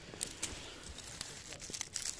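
Dry pine needles, twigs and leaf litter crackling and rustling, with scattered small clicks, as they are stepped on or brushed through.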